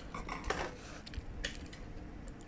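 A few light clicks and knocks as metal tongs and a plastic jar are handled, with sharper ones about half a second and a second and a half in.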